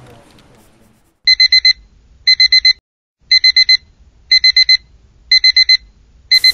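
Digital alarm clock beeping in quick groups of four high beeps, one group about every second, starting about a second in.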